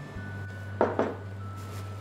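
Glass bowl set down on a wooden counter: two short knocks just under a second in. Faint background music and a steady low hum run beneath.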